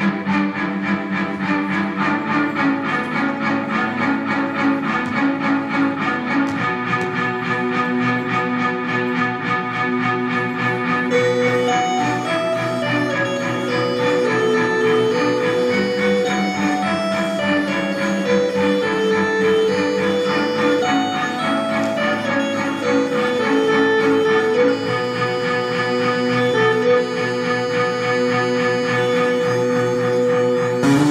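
Instrumental music with steady held notes over a regular pulse; a higher, stepping melody line comes in about a third of the way through.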